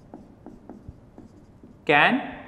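Marker pen writing on a whiteboard: a run of short, faint strokes and taps as the words are written out. A man's voice starts just before the end.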